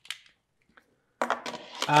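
A brief light clatter at the very start as arc-flash point sensors on their cables are handled, then a man speaking from about a second in.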